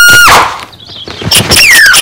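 Loud, distorted cartoon sound effects. A high held squeal cuts off about a quarter second in. After a short drop there is a run of sharp clicks and squeaks, with one falling squeak near the end.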